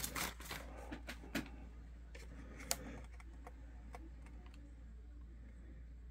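Handling noise as a plastic access point is lifted from its packaging tray and protective bag and turned in the hand: scattered light clicks and rustles, most of them in the first second and a half, with one sharper click near the middle.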